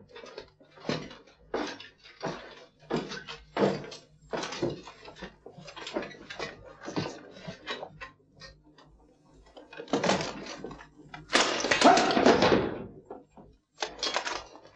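Footsteps and the clink of armour and chain mail as an armoured man climbs steps and settles onto a throne: an irregular run of short knocks, with a louder, longer stretch of clatter from about ten seconds in.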